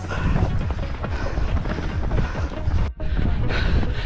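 Wind buffeting and rumbling on the microphone of a camera carried by a runner, with a brief dropout about three seconds in.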